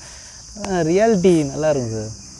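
A steady, high-pitched insect chorus, with a man's voice rising and falling over it from about half a second in.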